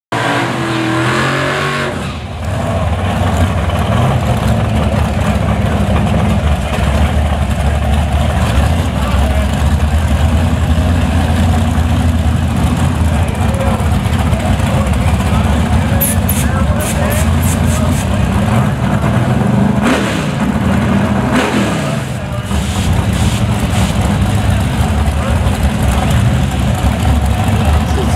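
Drag-racing car engines running loud at the starting line, revving through burnouts that leave tyre smoke, with engine pitch rising and falling a couple of times around twenty seconds in.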